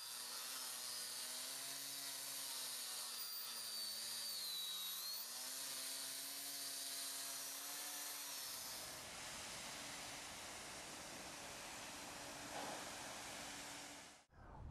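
A 4½-inch angle grinder with a dust shroud grinds a cured TX3-and-sand spall repair flush with the concrete floor. It gives a steady motor whine over a grinding hiss, dipping in pitch briefly about five seconds in as the wheel bites harder. The sound runs lighter and steadier for the last third.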